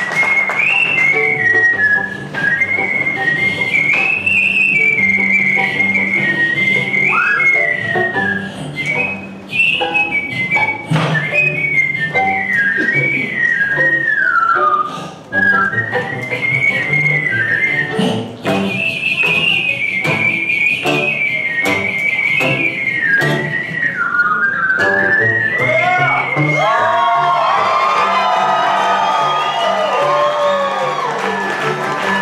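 Whistled melody into a microphone, high and clear, carrying the tune over a bluegrass band of banjo, acoustic guitar and upright bass. Near the end the whistled line breaks off and the band plays on.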